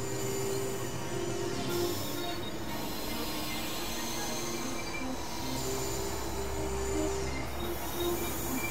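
Experimental electronic synthesizer noise music. Layered held tones step in pitch every second or so over a steady hiss, with high squealing tones and falling glides above. A deep low drone comes in about five and a half seconds in.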